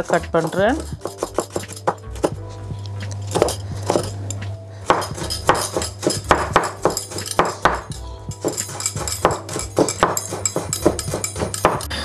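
Kitchen knife chopping garlic and ginger finely on a wooden chopping board: quick, repeated strikes of the blade on the wood.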